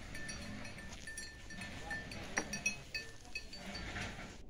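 Cattle-yard sounds around a cow feeding at a concrete trough: scattered short high chirps and light clinks, with one sharper clink a little past halfway.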